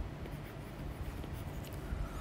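Faint ticks and scratches of a stylus writing a word on a tablet's glass screen.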